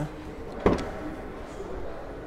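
A single sharp clunk a little over half a second in: a 2019 Kia Cadenza's trunk latch releasing as the exterior release button is pressed. The lid is manual, opened by hand with no power-opening motor.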